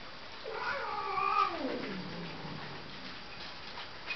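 A pet's single long, drawn-out yowl, starting about half a second in and falling steadily in pitch over about two seconds.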